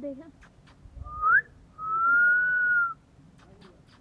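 A person whistling: a short upward-sliding whistle about a second in, then one long held whistled note.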